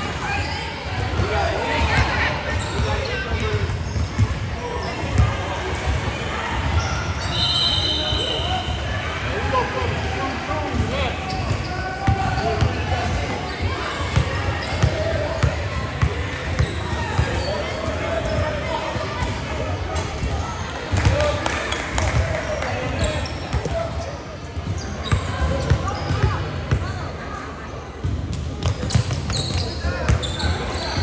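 Basketball bouncing on a hardwood gym floor in repeated short thuds, mixed with the echoing voices of players and spectators in a large gym. A brief high tone sounds about eight seconds in.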